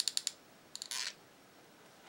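Hot glue gun's trigger clicking in a rapid run as a dab of glue is pushed out, stopping a moment in. A brief soft rustle follows just before a second in.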